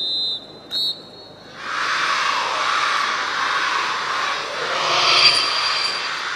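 A shrill whistle blast ends and a second short blast follows, the signal for the formation to move. Then the crowd starts applauding, a loud rushing sound that swells to a peak near the end and begins to ease.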